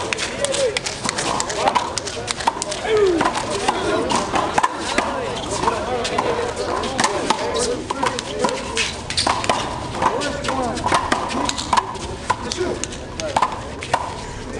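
A big rubber handball is slapped by hands and smacks off concrete walls and floor in a rally, a quick irregular series of sharp smacks, with voices talking in the background throughout.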